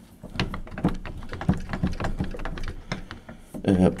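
Locked wooden door being pulled against its magnet-driven bolt, rattling in a quick, irregular run of clicks and knocks without opening: the bolt holds. A faint low hum runs underneath.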